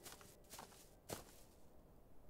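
Near silence with three faint, soft knocks; the loudest comes a little past the middle.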